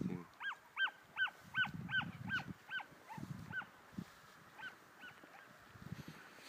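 Hunting hounds yelping in a quick run of short, high calls, about two or three a second, giving tongue as they chase a hare; the calls thin out and grow fainter in the second half.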